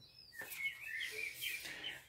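Faint small-bird twittering: a run of wavering high chirps lasting over a second, after a short high whistle-like glide at the start.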